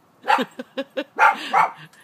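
A dog barking: a quick run of about six short barks, the loudest about halfway through.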